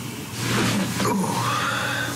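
Hot water pouring from a drinks machine into a paper cup, starting about half a second in, its pitch rising as the cup fills; a man's 'ooh' comes partway through.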